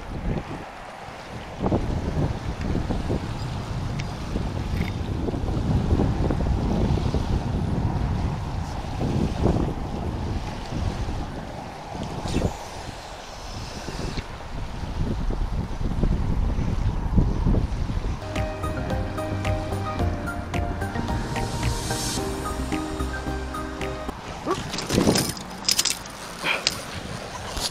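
Wind buffeting the camera microphone over distant road traffic, a steady low rumble. From about eighteen seconds in, a sustained sound made of several steady tones runs for some seconds and then stops, and there is a knock of handling near the end.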